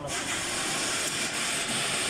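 A steady, even hiss that comes on suddenly.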